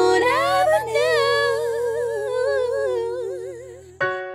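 Background song: a wordless sung vocal run that settles into a long held note with vibrato and fades out near the end, over a sustained low accompaniment.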